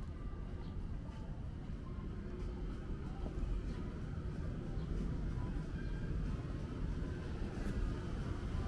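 Steady low rumble of city background noise, with faint voices of passers-by now and then.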